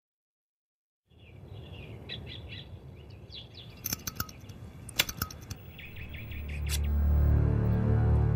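Silence for about a second, then birds chirping in the background, with a few sharp metallic clicks from a brass padlock being picked around the middle. Low, tense music swells in near the end.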